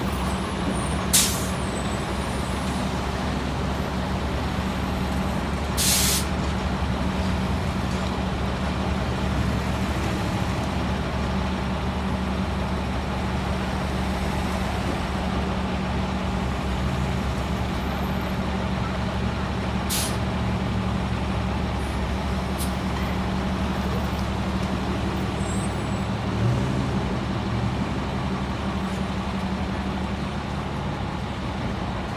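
A city transit bus idling at a stop, a steady engine drone with a low hum. Short sharp hisses of compressed air from the bus's air system come about one second in, again at six seconds (the longest), and twice more past twenty seconds.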